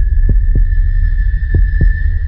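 Electronic sound-design score: a heartbeat-like double thump sounds twice, about a second and a quarter apart, over a deep, steady low drone and a thin high held tone.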